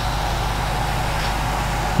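Steady low electrical hum with hiss: the background noise of a stage microphone and public-address system.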